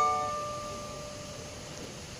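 The last strummed chord on a small ukulele-sized acoustic guitar ringing out and slowly dying away, ending the song.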